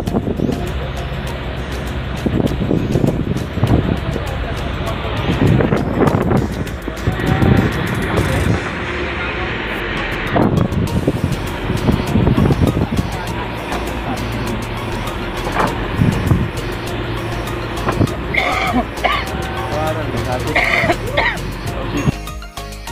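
A fishing boat's inboard engine running steadily under way, with wind and water noise surging over it.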